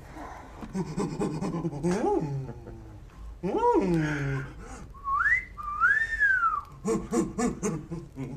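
A person's wordless vocal sounds, low hums rising into a whoop about two seconds in and another rising-and-falling whoop in the middle, then a whistle gliding up and down twice. Short, choppy voice sounds follow near the end.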